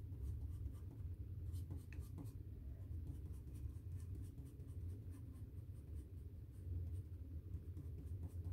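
HB graphite pencil scratching across sketchbook paper in quick, short, repeated hatch strokes, the side of the lead laid against the page to make dark marks.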